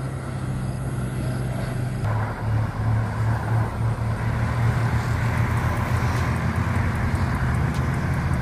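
Road traffic: cars driving along a road, a steady rumble of tyres and engines that grows fuller about two seconds in.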